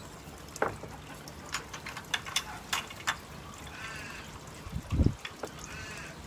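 Water trickling into an aquaponics fish tank, with a faint low hum, a few sharp clicks and knocks, and a dull thump about five seconds in.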